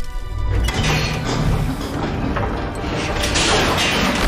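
Film sound effects of a crackling electric lightning bolt with crashing blasts and deep rumbling, over dramatic background music.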